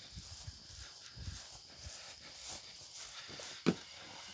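Footsteps of a person walking across grass, soft irregular low thuds, with a sharper knock near the end as they step up through a doorway into a small room. A faint steady high hiss runs underneath.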